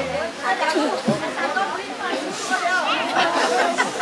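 Many people talking at once: overlapping chatter of several voices, none standing out. A low hum stops just after the start.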